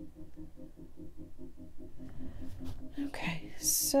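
A low hum pulsing about five times a second, with a few soft clicks near the end.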